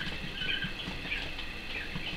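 Young coturnix quail peeping in short, high chirps every few tenths of a second, with a little scratching and rustling from the brooder bedding.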